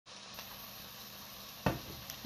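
Chopped vegetables sizzling steadily in a frying pan, with a single sharp knock about one and a half seconds in.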